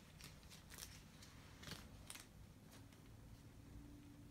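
Near silence with a few faint rustles and light clicks of a trading card being slid into a plastic penny sleeve; a faint steady hum starts a little past halfway.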